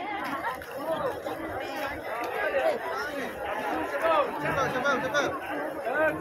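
Crowd chatter: many people talking at once in overlapping voices, with no single voice standing out.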